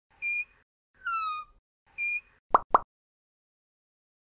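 Cartoon sound effects for an animated logo: three short blips, the first and last at the same pitch and the middle one sliding down, followed by two quick rising pops.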